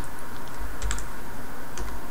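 Computer keyboard keys being typed: a handful of separate keystroke clicks, a couple near the start, one about a second in and two near the end, over a steady low hum.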